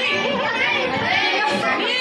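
Excited chatter of a crowd of children and adults talking over one another in a room, with no single voice clear.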